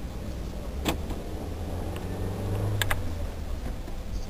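Car driving, heard from inside the cabin: a steady low engine and road rumble that swells slightly near three seconds in, with two sharp clicks, about a second in and near the three-second mark.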